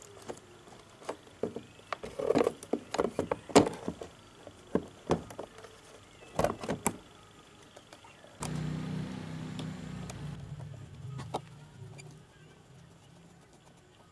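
Plastic fuse-box housing and wire connectors clicking and knocking as they are handled and pushed into a scooter's battery compartment. About eight seconds in, a steady low hum starts and fades out over the next few seconds.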